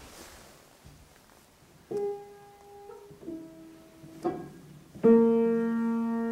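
Wurlitzer upright piano played by hand: two single notes about two and three seconds in, then a louder chord struck about five seconds in and left ringing.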